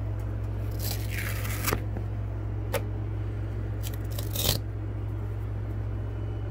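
Scraps of stabilizer being peeled and pulled off a sticky cutting mat: a short rustling tear about a second in, a sharp click near three seconds, and another brief rustle around four and a half seconds, over a steady low hum.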